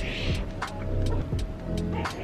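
A short, noisy slurp of instant noodles being sucked into the mouth, in the first half-second, over background music with a steady ticking beat.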